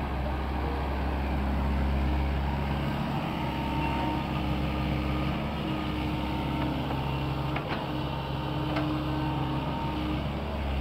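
SANY SY75C excavator's diesel engine running steadily under working load, with whining tones that come and go as the machine slews and moves. Two short clanks sound near the end.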